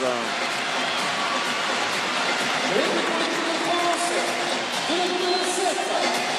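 Handball arena crowd cheering after a goal, a dense steady wall of voices, with a few long held sung notes rising out of it from about three seconds in.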